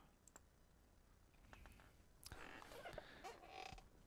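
Near silence: room tone, with a few faint clicks and a soft rustle in the second half.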